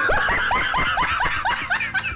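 Rapid high-pitched laughter, a quick string of rising 'ha' notes about six a second, starting and stopping abruptly.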